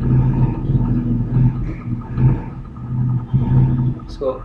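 A low hum with rumble underneath, swelling and fading in level.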